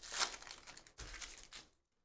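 Hands pulling open a Merlin Chrome trading-card pack, the wrapper crinkling in two bursts that stop shortly before the end.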